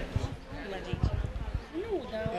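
Faint voices of people talking in the background, with a few short low thumps on the microphone.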